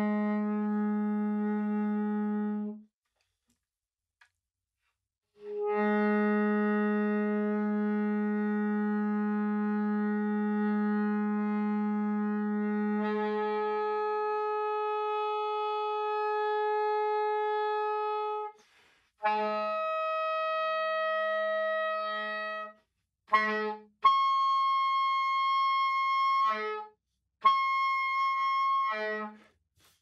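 Soprano saxophone playing an overtone-series exercise over the low B-flat fingering, in held notes with short gaps. The first long low note flips up to its octave about halfway through. Then comes the next partial above, and then twice a high note, the high D in the series.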